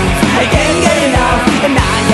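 Loud punk rock song played by a band on electric guitar, bass and drums, with drum hits coming in a steady beat.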